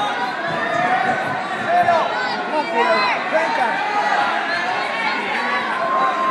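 Spectators in a gym chattering and calling out, many voices overlapping, with a few higher, rising shouts around the middle.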